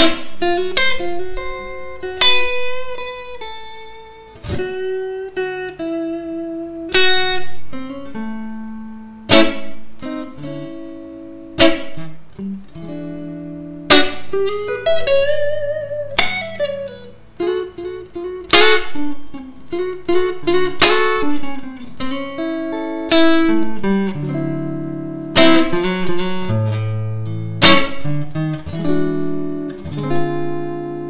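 Electric guitar played through a Trooper Electronic SS25 amplifier on its clean, normal setting and recorded direct from the amp's line out. It plays melodic single-note phrases mixed with chords, with wavering, bent notes about halfway through.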